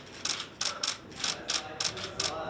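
Camera shutters clicking in short, quick bursts, about six clicks roughly three a second.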